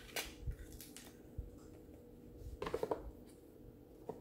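A rigid cardboard gift box being handled and its lid pushed down over it: a few soft knocks and rubs, then a short, quickly pulsing scrape of the lid sliding shut about three seconds in.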